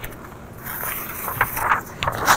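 Paper rustling and handling noise close to a lectern microphone, a run of short crackling rustles that starts about half a second in.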